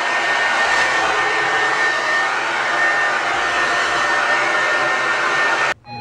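Handheld hair dryer running on high, drying wet hair: a steady rush of blown air with a thin steady whine. It cuts off suddenly near the end.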